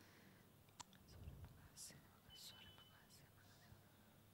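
Near silence in a quiet room, with a few faint whispered sounds.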